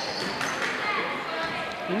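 Basketball game sounds in a large indoor hall: a ball being dribbled on a wooden court, with a steady murmur of spectators' and players' voices.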